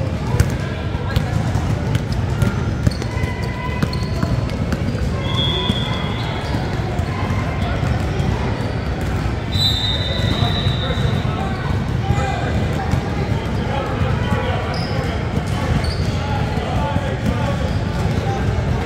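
A basketball being dribbled on a hardwood gym floor during a game, with brief sneaker squeaks about five and ten seconds in, under the indistinct voices of players and spectators echoing in the large gym.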